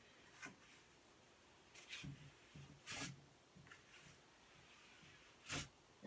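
Wad of newspaper wiped across a glass mirror damp with vinegar water: faint rubbing with a few short, louder swishes, the loudest near the end.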